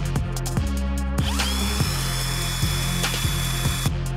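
Cordless drill with a hole saw cutting into PVC pipe: the motor whine rises about a second in, holds steady, and stops just before the end. Background music with a steady beat plays under it.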